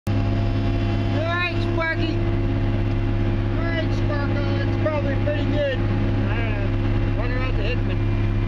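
Heavy diesel engine running at a steady idle, a constant low drone heard through the cab, with muffled voices talking over it.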